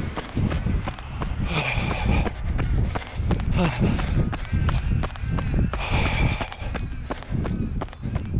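A runner's footfalls striking a paved path at a steady running pace, with the camera jostling along, and heavy breathing: two long breaths about four seconds apart.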